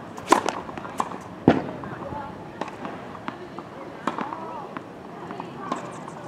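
Tennis serve: the racket strikes the ball with a sharp pop about a third of a second in, then a second, louder thump about a second later. Lighter ball pops follow from around the courts, over faint distant voices.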